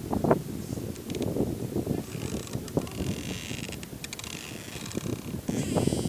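Wind buffeting the microphone in an uneven low rumble. Through it comes a faint, high, drawn-out creak in the middle: the swaying tree trunk grinding against the wooden fence rail it has grown into.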